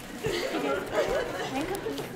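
Many voices chattering at once, overlapping with no single clear speaker: a crowd talking in a large hall.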